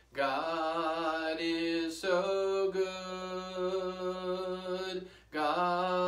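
A man singing a hymn solo and unaccompanied, in slow, long held notes, pausing for a breath just after five seconds.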